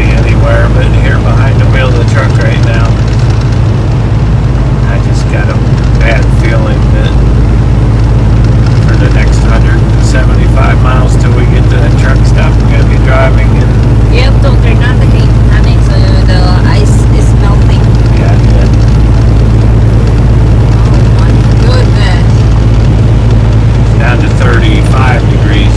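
Steady low drone of a semi truck's engine and road noise, heard from inside the cab at highway speed.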